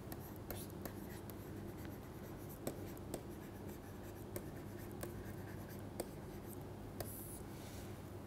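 Faint taps and light scratches of a pen stylus on a tablet as a heading is handwritten and underlined. There are scattered sharp ticks about once a second over a low steady hum.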